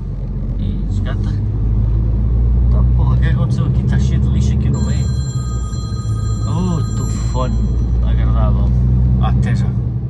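Steady low rumble of a lorry's engine and tyres on a wet motorway, heard from inside the cab while cruising, swelling a little over the first few seconds. Scraps of voice and a few faint steady high tones are heard near the middle.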